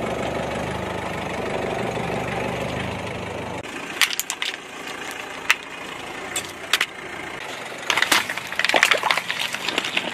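A car engine running steadily for the first three seconds or so, then a car tyre rolling over a burger and a pile of French fries, crushing them with sharp crunches and crackles, thickest near the end.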